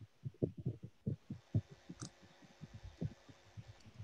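Soft, muffled low taps, several a second and irregular, over a faint steady hum: typing on a computer keyboard.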